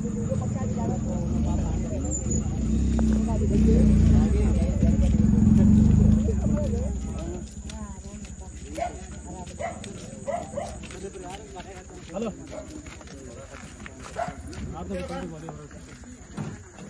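Indistinct voices of several people talking, over a heavy low rumble that dies away about seven seconds in; afterwards the voices carry on more quietly.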